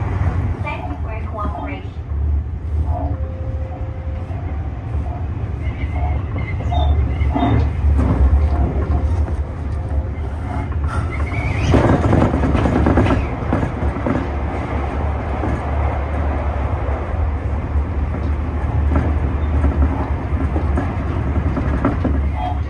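Tobu 50000-series electric train running at speed, heard from inside the driver's cab: a steady low rumble of wheels and traction motors, with a louder stretch of noise about twelve seconds in, while the train is in a tunnel.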